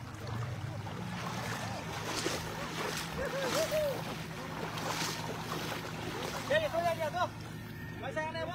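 An elephant wading through shallow floodwater, the water sloshing and splashing around its legs with each step, over a steady low hum. Distant voices call out briefly twice, a little past the middle and near the end.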